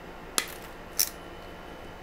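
RJ45 crimping tool's cutting blade snipping through the flattened row of copper conductors of outdoor shielded Cat6 cable, trimming them square. Two sharp clicks about half a second apart.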